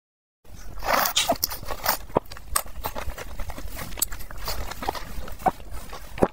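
Close-miked mouth sounds of eating saucy enoki mushrooms: wet smacks, slurps and chewing clicks in a quick, irregular run, starting about half a second in.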